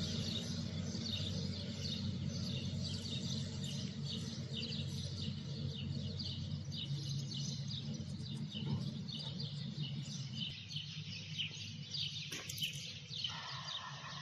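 Many small birds chirping in quick, overlapping calls, over a steady low hum.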